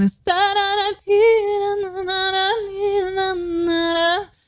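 A young woman's solo singing voice from a live vocal performance: a short note, a brief break about a second in, then one long held note with small pitch wobbles.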